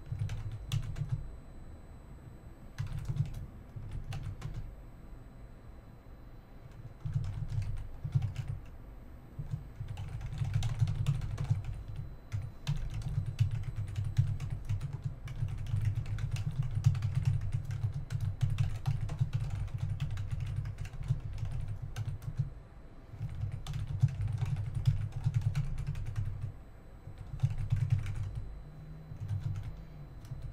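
Typing on a computer keyboard in bursts of fast keystrokes, with short pauses between them.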